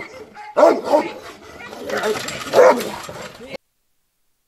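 Dogs barking, mixed with a person laughing. The sound cuts off suddenly shortly before the end.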